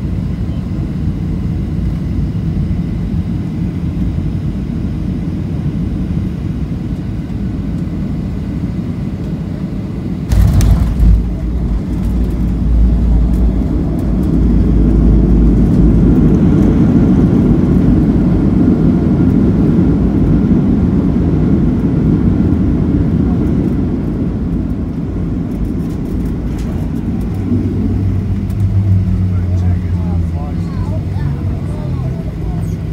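Boeing 737-700 cabin noise on final approach: steady engine and airflow drone heard from a seat over the wing. About a third of the way in there is a jolt as the wheels touch down, then a heavy low rumble of the tyres on the runway. The engine noise then grows louder for reverse thrust during the rollout and eases off near the end.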